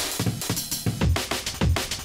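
Chopped breakbeat drums played by the TidalCycles live-coding software. Breakbeat samples cut into eighth-note slices are picked at random and sequenced in a fast, stuttering loop of drum hits.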